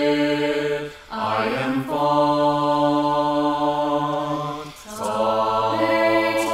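Four-part a cappella vocal harmony, multi-tracked male and female voices singing a slow hymn in long, steadily held chords. The chord breaks off briefly about a second in and again near the end, each time moving to a new held chord.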